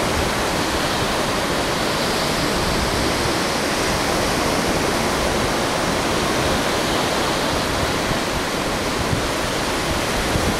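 Ocean surf breaking on a beach, with wind blowing across the microphone: a steady, dense rush of noise that never lets up.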